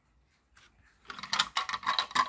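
Plastic gears and axle of a toy car's friction-motor gearbox clicking and rattling as they are handled and turned by hand. The clicking starts about half a second in and thickens after a second.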